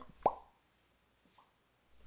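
A single short mouth-made pop, a quick falling 'plop', about a quarter second in. A much fainter one follows about a second later.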